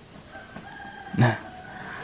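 A rooster crowing faintly, one drawn-out call through most of the first second and a half.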